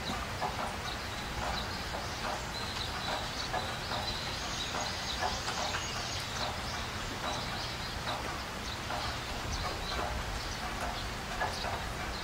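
Animal and bird sounds: many short irregular calls, with a few high chirps near the middle, over a steady low background hum.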